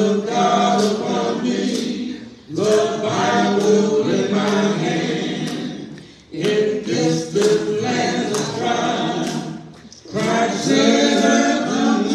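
A church congregation singing a gospel song unaccompanied, in phrases of about four seconds with short breaks between them.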